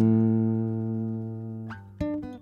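Acoustic guitar: a chord strummed once and left ringing, fading away, with a short note sliding up near the end.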